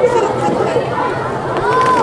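Crowd of onlookers chattering: many overlapping voices talking at once, with no single voice standing out.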